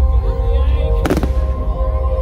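A single firework shell bursting with one sharp bang about a second in, over loud synth music with a deep, steady bass.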